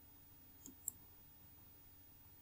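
Two faint computer mouse clicks about a fifth of a second apart, a little under a second in, over near silence.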